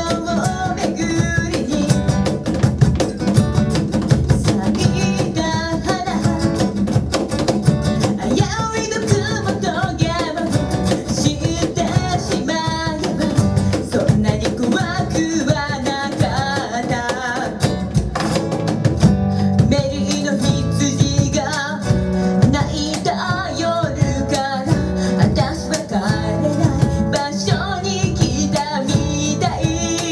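Live acoustic band: a woman singing over a strummed acoustic guitar and a cajón keeping a steady beat.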